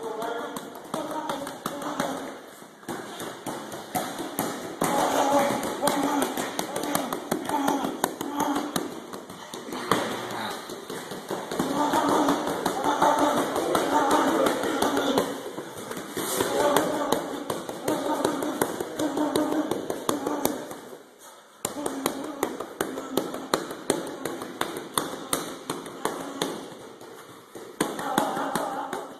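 Indistinct talking in phrases of a few seconds, over a continual run of small taps and clicks.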